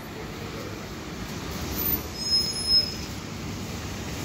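City street traffic noise, with a brief high-pitched squeal a little over two seconds in.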